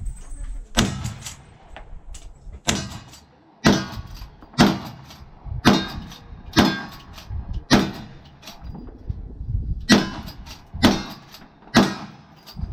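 A lever-action rifle fired in a rapid string, about ten shots roughly a second apart with one slightly longer pause, as the shooter works the lever between rounds.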